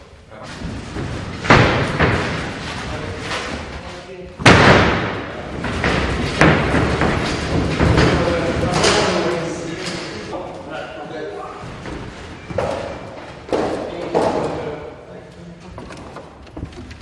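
Heavy thuds and knocks of a large wooden stretcher frame being raised upright and set against a wall, with men's voices in between. There are several thuds, the loudest about four and a half seconds in.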